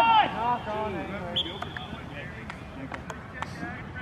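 A loud voice calling out fades away in the first half-second, followed by fainter shouts and voices across an open field and a few sharp clicks.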